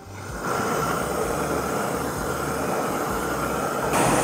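Propane grill gun torch firing its flame into lump charcoal to light it: a steady rushing noise that comes on within the first half second.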